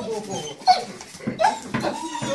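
German Shepherd whimpering and crying out in happiness at greeting its owner: a run of short, high-pitched cries that bend up and down in pitch.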